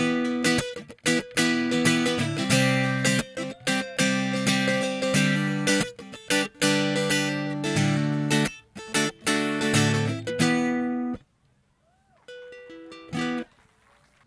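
Acoustic guitar strummed in chords, a rhythmic instrumental passage that stops about eleven seconds in. A softer single held note rings briefly near the end.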